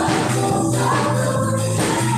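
Live church praise band playing a worship song: keyboard and electric guitars over a steady bass, with a group of voices singing.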